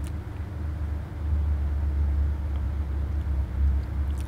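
A low, steady rumble with a faint hum above it, growing louder about a second in.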